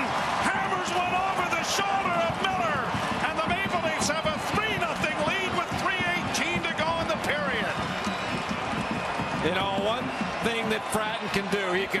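Hockey arena sound: a continuous crowd din with voices, broken by several sharp clacks of sticks, puck and players hitting the boards.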